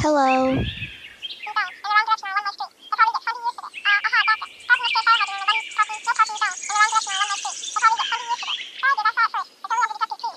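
High-pitched, sped-up cartoon-style voice chattering rapidly with no clear words, in quick bursts, as in a phone call between the toy characters. A falling swoop sound effect comes at the very start.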